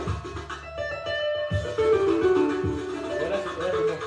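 Electric bass and electric guitar playing together live: regular low bass notes under a plucked melodic line that steps downward in the middle of the passage.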